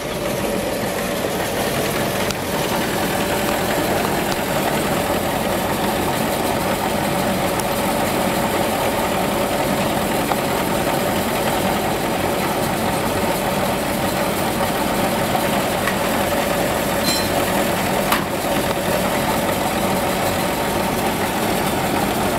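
Steady machinery drone with a held hum: a grain dryer's elevator running and pouring grain into a trailer, with a diesel tractor idling close by.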